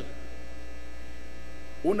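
Steady low electrical mains hum in the sound feed, with a man's voice starting again near the end.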